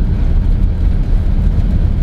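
Steady low engine and road rumble of a van driving, heard from inside its cabin.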